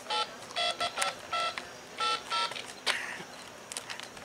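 A run of seven short electronic beeps of differing pitch, irregularly spaced over about two and a half seconds, followed by a single click.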